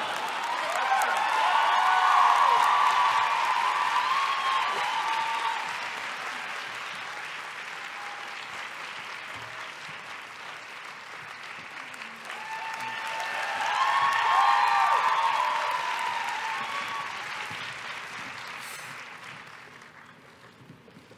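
Audience applause with cheering voices, swelling loudest twice, first about two seconds in and again about fourteen seconds in, then dying away near the end.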